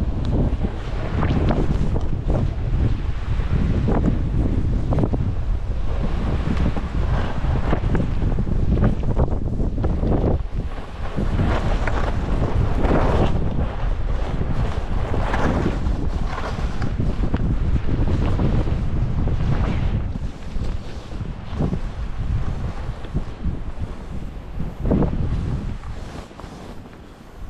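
Wind buffeting the microphone of a moving skier, with the skis scraping and hissing over packed snow in repeated surges through the turns. It eases somewhat over the last few seconds.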